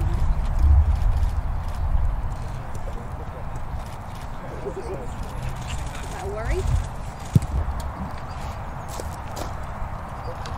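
Outdoor training-ground ambience: indistinct distant voices over a low rumble of wind on the microphone, heaviest in the first couple of seconds. Scattered knocks, with one sharp knock a little after seven seconds.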